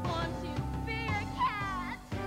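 Live stage band music with a woman's voice giving cat-like sung cries, the last one sliding down in pitch near the end.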